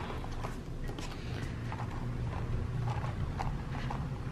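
Footsteps on a hard floor with handheld-camera handling noise: soft, irregular clicks and knocks over a low hum.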